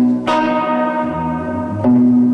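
Acoustic and electric guitars playing an instrumental passage of ringing chords: one struck about a quarter of a second in sustains, and another is struck near the end.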